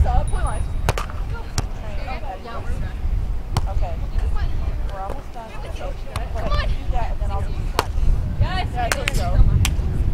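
Beach volleyball ball contacts: several sharp slaps of the ball off players' hands and forearms, spread through the rally. Players' shouted calls come in between, over a steady low rumble of wind on the microphone.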